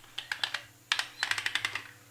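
Glass microscope slides clicking in their plastic rack as the tray is slid out of a cardboard box: a few separate clicks, then a quick run of small clicks about a second in.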